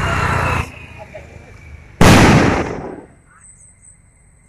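A firework rocket going up with a loud hiss that cuts off about half a second in, then a single loud bang about two seconds in that dies away over about a second.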